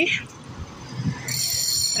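Cars passing on a city street, with a steady high-pitched whine starting a little over a second in.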